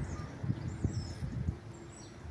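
Outdoor ambience: faint high bird chirps in the first second, over an uneven low rumble.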